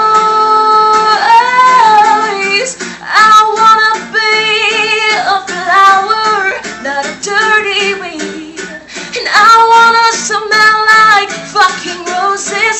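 A woman sings a pop song loudly, with long held notes and vibrato, over a guitar accompaniment.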